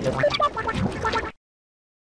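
Soundtrack of an animated kids' TV channel ident: a quick string of short cartoon-creature calls and clicks that cuts off suddenly a little over a second in.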